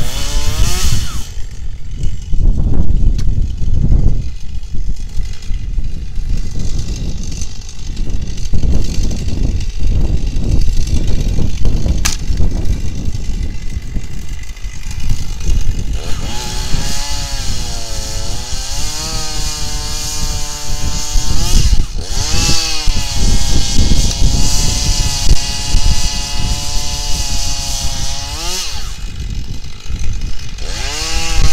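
A chainsaw starts cutting firewood about halfway in. Its engine note drops as it bogs into the cut and rises again as it frees, several times over. Before that there is a low, uneven rumble.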